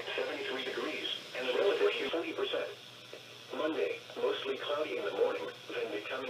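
Speech only: the NOAA Weather Radio broadcast voice reading the local weather observation and forecast through a small radio speaker, in phrases with short pauses.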